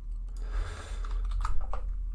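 Typing on a computer keyboard: a few keystrokes, mostly in the second half.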